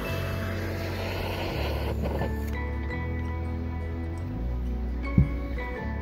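Background music with a steady bass line; over it, for the first two and a half seconds, a kitchen torch's flame hisses as it lights applewood chips in a cocktail smoker, then cuts off. A single knock near the end.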